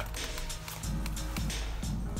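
Background music playing under the video.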